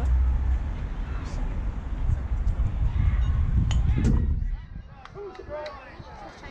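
Low rumble of wind buffeting an outdoor microphone, dropping away suddenly about four and a half seconds in, with two sharp clicks just before it stops and faint voices in the background.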